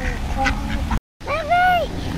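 Mallard ducks quacking, with wind rumbling on the microphone. About a second in, the sound cuts out briefly, then a young child's voice calls out once in one long high note that rises and falls.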